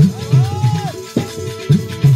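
Instrumental passage of a Gujarati folk bhajan: a barrel drum, likely a dholak, beats a quick rhythm under a steady held note, with small hand cymbals (manjira) ringing; a sharp strike lands about a second in.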